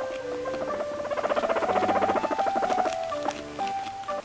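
Guinea pig giving a rapid pulsing call while being stroked, a run of fast pulses about two seconds long starting about a second in, over background music.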